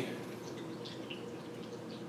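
Quiet room tone with a few faint, light ticks as a cardboard box is handled.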